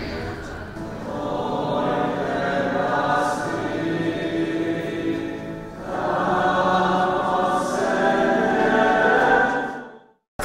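A group of voices singing together in a church, in two long sung phrases with a brief break between them. The singing cuts off suddenly at the end.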